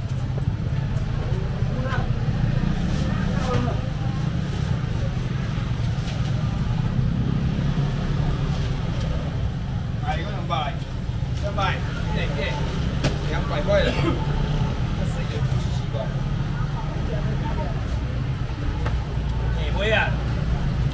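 Busy market ambience: indistinct chatter from shoppers and stall workers over a steady low rumble, with the voices busiest around the middle.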